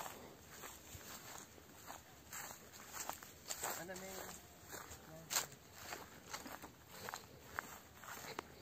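Footsteps of someone walking through orchard grass: irregular soft steps, the sharpest about five seconds in. A few brief, faint voices are heard around the middle.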